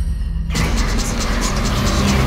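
Horror trailer score: a deep sustained drone, joined about half a second in by a sudden loud rushing noise with a rapid flicker in it.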